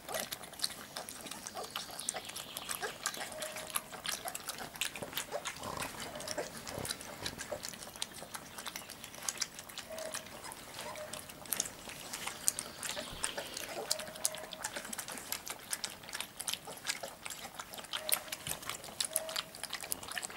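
A litter of giant schnauzer puppies lapping and slurping milky food from a shared metal pan: a dense, irregular stream of wet licks and clicks, with a few brief squeaks scattered through it.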